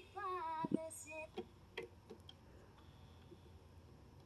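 Quiet music from the record playing on a turntable: a melody that stops about a second in, followed by a few light clicks of the tone arm and its lift lever being handled.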